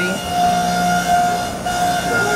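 Steady mechanical hum with a few held tones over a noisy background, without a break.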